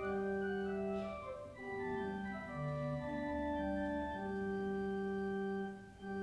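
Organ playing slow, sustained chords that change every second or two, as an opening prelude to a church service.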